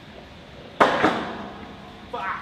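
A single sharp metallic clank from a steel rolling warehouse ladder being pushed across the floor, ringing out and echoing briefly in the large room.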